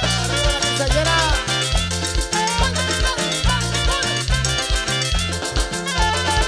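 Live band playing an instrumental Mexican son: melodic lead lines over a repeating electric bass line and a steady drum beat.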